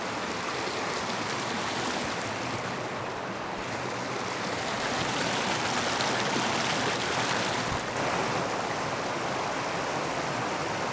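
Creek water rushing steadily over a concrete slab bridge, a little louder for a few seconds in the middle.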